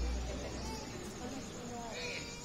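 Faint murmur of people's voices, under a low rumble that fades out about a second in.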